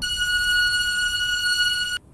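A steady, high-pitched beep tone held unbroken for two seconds, starting and cutting off abruptly.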